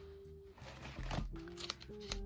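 Soft background music with held notes, under the crinkle and light clicks of plastic binder pocket pages being flipped over.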